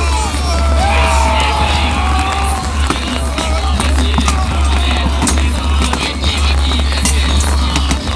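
Irregular clatter of swords and spears striking round wooden shields in a massed reenactment melee, with music playing over it.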